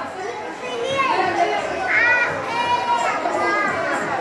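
Children's voices and chatter from a group gathered close together, with higher-pitched calls standing out about one to three seconds in.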